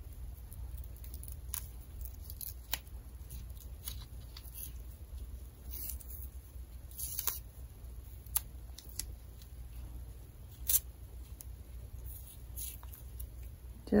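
Faint, scattered crackles and ticks of double-sided tape being pressed by fingertips along the edge of a plastic mask, with a few sharper clicks.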